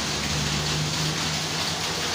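Steady rain falling, an even hiss of water, with a low steady hum underneath.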